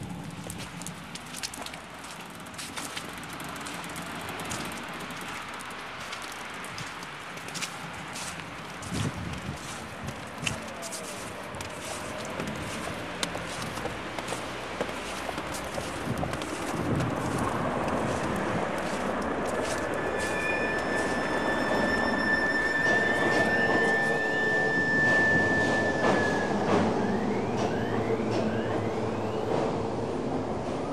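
A train running with a rumble that grows louder through the second half. A long steady high squeal of the wheels on the rails starts about two-thirds of the way in, and several short sliding squeals follow near the end. Crackling clicks run over a noisy background in the first half.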